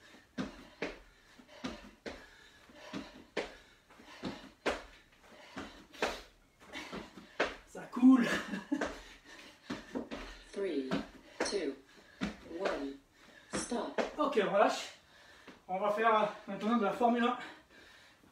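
Feet in trainers landing again and again on a wooden floor as a man jumps with his feet together around an aerobic step, about two landings a second. A man's voice breaks in now and then, more often in the second half.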